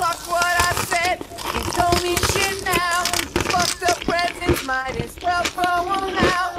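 A high voice singing a slow melody, holding notes with a wide wavering vibrato, over frequent short crisp clicks and crunches.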